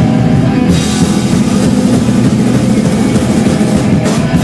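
Hardcore punk band playing live at full volume: guitars, bass and drum kit together in a loud, dense mass of sound, recorded from the crowd.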